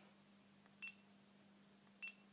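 A GoPro HD Hero2 camera gives a single short electronic beep a little under a second in as its menu button is pressed to step to the next settings screen, with another beep starting right at the end.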